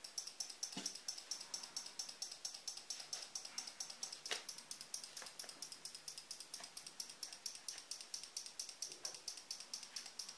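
12-volt relay in a homemade relay-and-capacitor flasher circuit clicking rapidly and evenly, about six clicks a second, as it switches a small 12-volt bulb on and off; the flash rate is set by the timing capacitor's value. A few faint handling knocks as the circuit is picked up.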